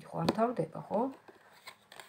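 A woman's voice for about the first second. Then a deck of tarot cards is handled on a table: soft card rustling with a couple of light clicks.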